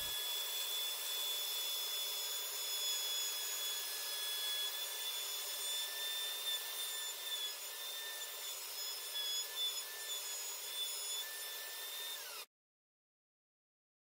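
Plunge router running with a steady high whine while its bit cuts a shallow 3/16-inch-deep circular recess in a pine board; the pitch wavers slightly as the bit takes load. The sound cuts off abruptly near the end.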